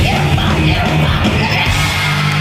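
Live punk rock band playing loud, with yelled vocals over the full band.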